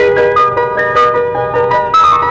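Piano playing a quick run of single notes, several a second, in an instrumental passage of a 1960s Tamil film song.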